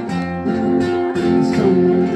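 Live acoustic guitar strumming held chords as accompaniment to a Christian worship song, with little or no singing over it.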